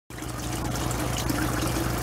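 Water from a paludarium's waterfall trickling and splashing steadily into the tank's pool, over a steady low hum.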